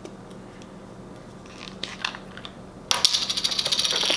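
Plastic parts of a PEM hydrogen water bottle being handled in their box. Light handling noises, then about three seconds in a rapid run of small sharp clicks, about a dozen a second, lasting just over a second.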